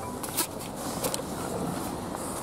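Rustling handling noise with a few light clicks as a camera is moved about inside a car.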